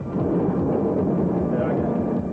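Loud, steady low rumble of a car driving on a front tyre that has just blown out, heard from inside the cabin.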